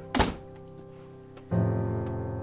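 Slow piano music holding sustained notes, with a new chord struck about one and a half seconds in. Near the start a single short, loud thunk cuts across it.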